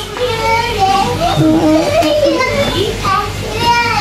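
Several children's voices shouting and calling out in drawn-out, sing-song tones, overlapping one another.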